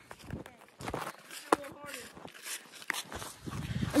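Quick footsteps through dry leaves and grass with irregular rustling and handling noise, a sharp smack about a second and a half in, and a brief voice calling soon after.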